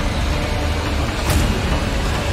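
Horror-trailer sound design: a loud, dense low rumble with a sharp hit a little over a second in.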